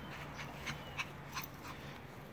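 Yorkshire terrier giving a quick series of short, high whimpering yips, about five in under two seconds, the loudest about a second in.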